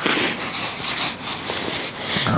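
A hand rubbing and working through a pile of small bloodworms dusted with separator powder on a sheet of newspaper: a soft, irregular rustle of paper that swells and eases about twice a second.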